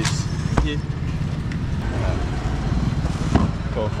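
Low, steady rumble of a vehicle engine idling close by, with one sharp click about half a second in.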